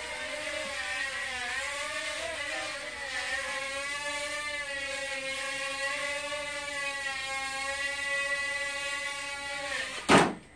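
Small brushed-motor quadcopter (XinXun Sky Devil) in flight, its motors and propellers whirring at a high pitch. The pitch wavers up and down in the first few seconds, then holds steadier, and the sound stops near the end.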